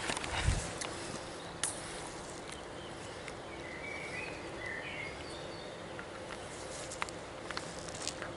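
Quiet outdoor evening ambience with a steady hiss, a few faint bird chirps in the middle, and scattered clicks and a low bump from the camera being handled near the start.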